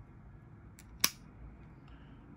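An opened circuit breaker's switch mechanism pushed back to the on position by hand: a faint click, then one sharp snap about a second in as the contacts close.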